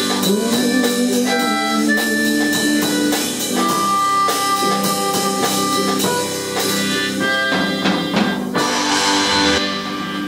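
A blues band playing live: drum kit played with sticks under electric guitar and harmonica, with long held notes, one bending upward near the start. A cymbal wash swells near the end.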